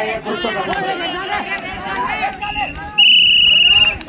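Referee's whistle at a kabaddi match: a short blast about two and a half seconds in, then a long, loud, steady blast near the end. Crowd chatter and voices run underneath.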